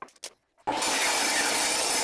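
Jobsite table saw ripping a hardwood flooring board lengthwise to width: a steady, even cutting noise that starts suddenly about two-thirds of a second in.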